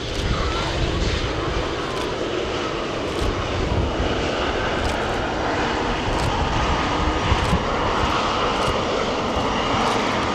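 Boeing 777-300ER's GE90 jet engines running loud and steady as the airliner rolls along the runway on its landing roll: a continuous rush with a faint high whine over it.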